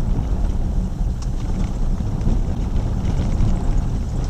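Jeep WK2 Grand Cherokee driving along a rutted dirt trail, heard from inside the cabin: a steady low rumble of engine and tyres, with a light knock about a second in.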